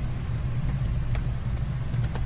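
Steady low background hum with one faint click about a second in.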